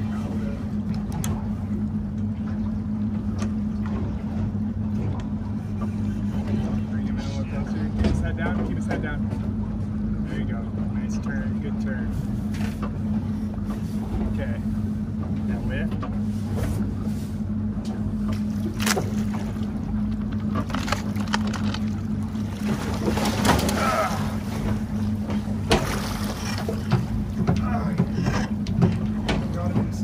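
A boat engine idles with a steady low hum. Scattered clicks and knocks come over it, more of them in the second half.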